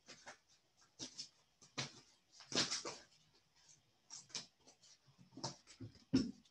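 Tarot cards being handled and drawn from the deck: a faint string of short, irregular rustles, the longest about two and a half seconds in.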